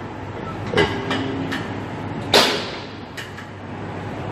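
Plate-loaded gym machine clanking once, sharply, about two seconds in, over steady gym background noise.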